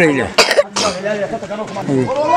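An elderly man coughs twice in quick succession about half a second in, then goes on talking.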